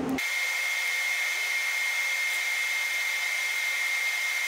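TIG welding arc on hardened rocker guide plates: a steady hiss with a high, constant whine, coming in abruptly just after the start.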